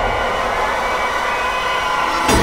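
Steady drone of several held tones from a television drama's background score, a suspense effect.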